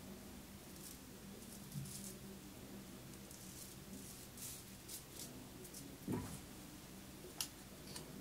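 Faint scraping of a French SGDG straight razor cutting lathered stubble on the neck, in a run of short strokes. There is a soft knock about six seconds in and a sharp click near the end.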